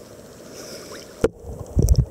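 A swimmer's movement heard through a camera held just under the water: a steady low rush of water, a sharp knock about a second in, then heavy low thuds of water near the end.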